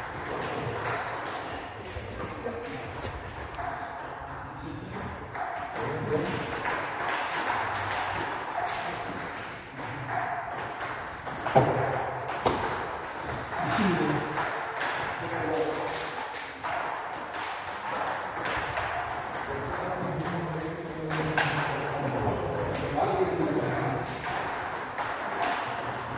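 Table tennis ball clicking on bats and table during a doubles game, with many separate ticks and one sharper hit about a third of the way in. Voices talk in the background.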